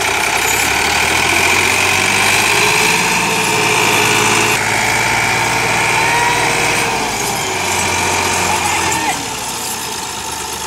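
Massey Ferguson 260 Turbo diesel tractor engine running hard under heavy load, pulling a loaded sugarcane trolley, with a high whine over the engine note. It eases off about nine seconds in.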